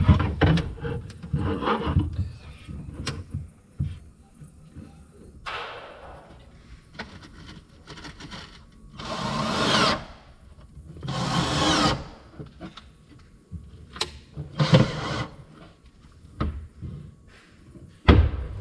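Power tool running in short bursts of about a second, four times, with scattered knocks and clicks of wooden cabinet panels being handled.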